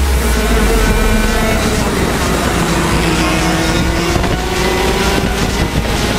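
Racing go-kart engines running at speed, their pitch falling over the first few seconds and then climbing again as they come off the throttle into a corner and accelerate out.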